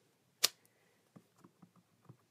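A stamp on a clear acrylic block set down with one sharp tap about half a second in, followed by a few faint light taps as the stamp is worked and dabbed on an ink pad.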